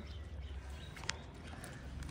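Steady low background rumble with one sharp click about a second in.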